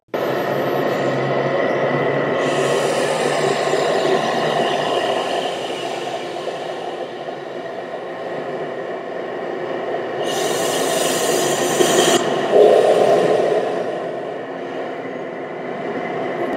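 Freight train running: a steady rumble with a locomotive's engine drone. About ten seconds in, a burst of hiss lasts about two seconds.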